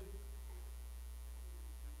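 Steady low electrical mains hum, unchanging throughout.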